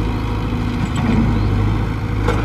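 Komatsu PC75UU mini excavator's diesel engine running steadily while it works, with the bucket dragging through loose soil and gravel and a few light knocks.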